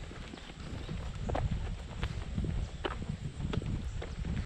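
Footsteps of people walking on an asphalt road, a short click with each step, over a low rumble of wind on the microphone.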